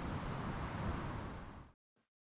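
Steady outdoor background noise, an even hiss with some low rumble, fading out about three-quarters of the way through and then cutting to silence.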